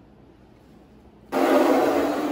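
Rustling handling noise on the phone's microphone as the camera is picked up and swung around, starting suddenly about a second and a half in after a quiet pause.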